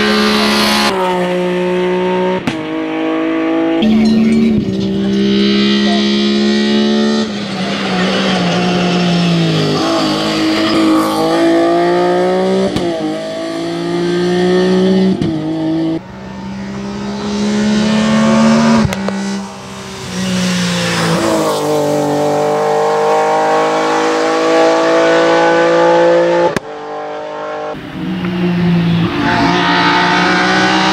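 BMW E30 hill-climb race car's engine at high revs under full throttle. Its pitch climbs and then drops sharply at each of a string of gear changes, with a few sharp cracks along the way.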